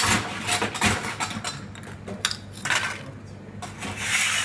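Ice cubes clinking and knocking as they are added to a cocktail glass, several separate clinks.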